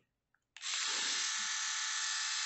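Philips YS521 rotary electric shaver switched on about half a second in, its motor and cutting heads running with a steady, even whir. It is running on freshly fitted replacement batteries and holds a steady speed without faltering.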